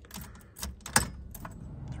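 Car keys clinking on their ring and the key going into a Ford Bronco II's ignition lock: a handful of small metallic clicks, with one sharper click about a second in.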